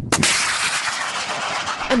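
Anti-tank guided missile fired from the Caracal's four-tube launcher: a sharp bang at launch, then a steady rushing hiss of the missile's flight that runs on for nearly two seconds.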